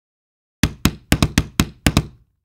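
A quick run of about eight sharp, knock-like sound effects, unevenly spaced over about a second and a half, starting about half a second in, as the words of a subscribe-reminder graphic pop onto the screen.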